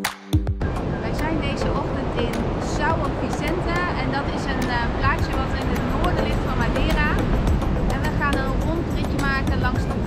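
Sea surf breaking on a pebble beach: a steady, continuous roar of waves, with wind buffeting the microphone and adding a deep rumble.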